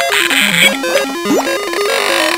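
2005 Playskool Busy Ball Popper's electronic sound chip playing a simple stepped beeping tune, with whistle-like sliding sound effects rising and falling over it. A hiss sits over the first half second or so.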